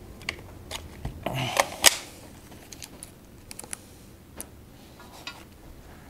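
Scattered light clicks and taps of metal parts being handled: a lag bolt being fitted into a steel TV wall-mount bracket, with a brief scraping rustle about a second and a half in.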